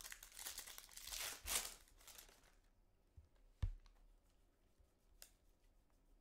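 Foil wrapper of a Panini Prizm trading-card pack being torn open and crinkled for about two and a half seconds, followed by a couple of sharp taps as the cards are pulled out and handled.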